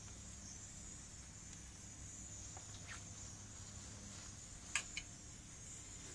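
Gas grill's rear rotisserie burner running with a faint, steady hiss, and a couple of short clicks near the end.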